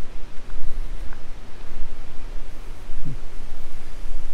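Wind buffeting the microphone: an uneven, gusting rumble of noise with a rustle over it.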